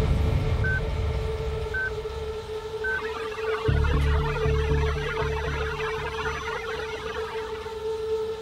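Documentary background score: a sustained electronic drone with four short high beeps about a second apart, then a low pulsing bass enters about four seconds in.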